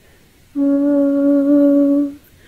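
A voice humming a lullaby: after a brief pause, one long steady note begins about half a second in.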